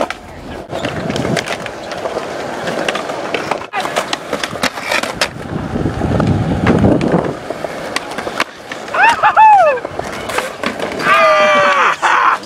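Skateboard wheels rolling over concrete, a steady rough rumble with scattered clacks and knocks from the board. Near the end come loud yells, a couple of short falling ones and then a long drawn-out scream.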